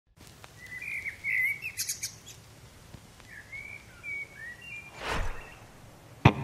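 Birds chirping in two short runs of calls, with a brief whoosh about five seconds in.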